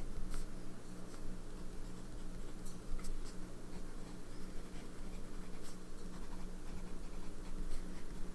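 TWSBI Diamond 580 AL fountain pen with a medium nib writing words on paper: a soft scratch of the nib across the page, with a few short clicks. A steady low hum runs underneath.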